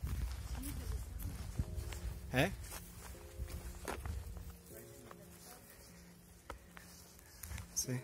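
Footsteps of hikers walking along a dirt forest trail, with a low wind rumble on the microphone that eases off about halfway through.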